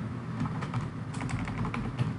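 Computer keyboard being typed: a quick run of about a dozen key clicks, most of them in the second half.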